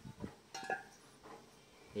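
Metal boat propellers clinking as they are handled on a table: one light clink with a short ring about half a second in, and a few faint knocks around it.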